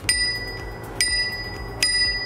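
Small thumb-lever bicycle bell on a DYU D3F e-bike's handlebar, flicked three times about a second apart, each strike ringing on in a clear ding.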